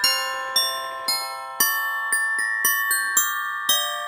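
Christmas background music: a bell-like melody of struck notes, two to four a second, each ringing out and fading.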